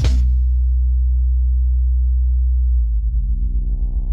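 Electronic music: a loud, steady, very deep bass tone held for about three seconds, then the bass starts pulsing and a layered synth chord swells in above it.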